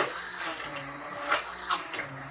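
Immersion blender running on its low setting in a pot of thick, chunky soup: a steady motor hum with a few short knocks as the blade head is moved up and down.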